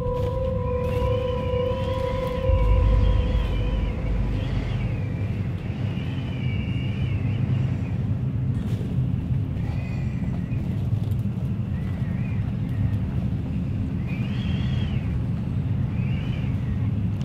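Eerie horror film score: a low rumbling drone under high warbling tones that waver up and down, with a steady held tone that fades out about four seconds in and a deep swell about two and a half seconds in.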